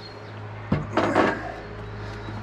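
Wooden companionway sliding hatch sliding along its runners, freshly lubricated with silicone grease: a sudden start about two-thirds of a second in, then a short slide lasting under a second.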